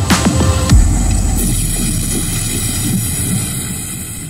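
Sound show of a giant fire-breathing dragon sculpture played through loudspeakers, with a deep falling roar about a second in. It goes on as a steady rushing roar with a low rumble, and a high hiss joins it while the flame jets fire from the heads.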